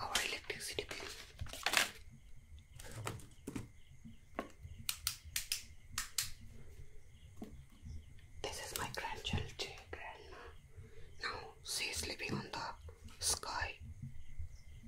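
Close-miked ASMR trigger sounds on small objects: paper crinkling at first, then a run of sharp separate taps, then denser scratching and rustling on items on a dresser in the second half.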